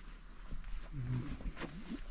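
A man's footsteps on wet, muddy ground, with a low wordless murmur from his voice about a second in.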